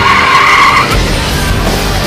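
Race-car tyre squeal and engine noise as a remote-control Lightning McQueen toy car speeds away. The squeal holds two steady tones and stops about a second in, leaving a low engine rumble.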